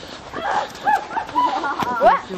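Speech only: high-pitched voices talking, with a quick rising exclamation near the end.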